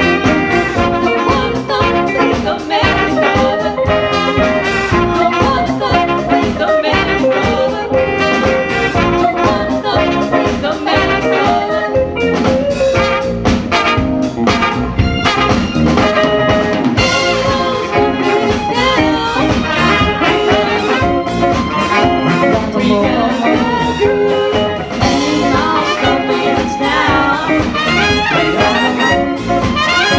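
Live band playing a horn-driven passage: trumpet, saxophones and trombone together over drum kit, bass and keyboard.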